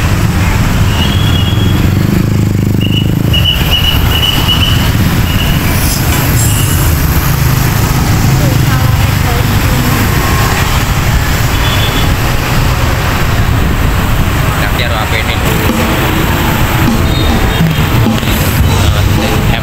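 Dense motor-scooter traffic heard from a moving vehicle: a loud, steady rumble of engines and road noise, with a few short high-pitched tones in the first few seconds.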